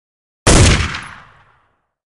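A single sudden loud blast sound effect about half a second in, dying away over about a second.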